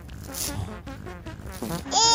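A doll's cloth diaper being handled and changed: fabric rustling with scattered clicks and a short rasping rip about half a second in.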